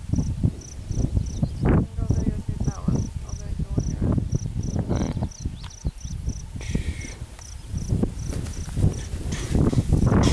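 A cricket chirping in a steady high pulse, about four chirps a second, over irregular low rumbling and rustling noise on the microphone.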